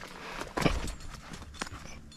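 A climber moving on a rock face: a few short knocks from hands, shoes and gear against the rock, the loudest a little over half a second in and a sharper click about a second and a half in.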